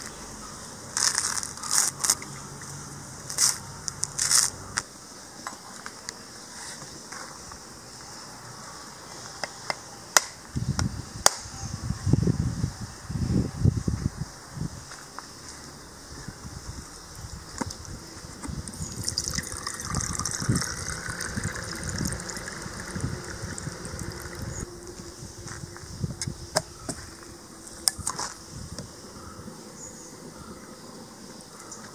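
Coconut husk fibres torn off by hand with sharp tearing strokes, then the blade of a machete knocking on the coconut shell to crack it. Partway through, the coconut water gushes out into a steel tumbler as a stretch of hissing, splashing noise.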